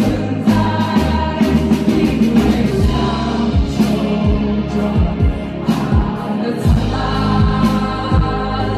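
Live band music from a drum kit and synthesizer keyboards, with a woman singing. A deep kick drum drops in pitch on each hit under a sustained bass, with cymbal hits throughout.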